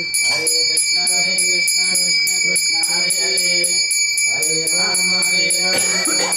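Puja handbell rung quickly and steadily, several strokes a second, with its ringing tone held throughout, over devotional music.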